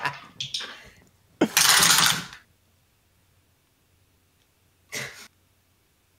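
Dice rolling and rattling on a table: one sudden clatter lasting about a second, then a shorter, fainter rattle near the end. The tail of laughter comes first.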